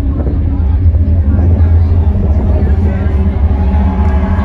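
Live metal band's sound on a festival PA, picked up loud and distorted by a phone in the crowd: a steady, heavy low bass rumble, with crowd voices over it.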